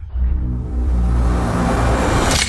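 Film-trailer soundtrack with no dialogue: a deep bass drone and a few held low notes under a noisy swell that rises and grows louder toward the end.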